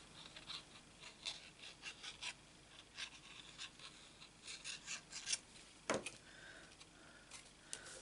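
Quiet scratching and tapping of a liquid-glue bottle's tip dabbed along the raised ridges of embossed cardstock, then paper being handled and pressed down, with one sharper click about six seconds in.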